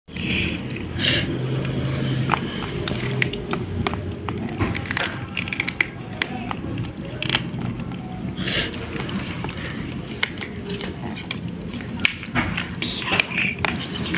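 Two kittens chewing and crunching on a crisp fried fish, with many quick, irregular clicks of teeth through the skin and bones over a low background murmur.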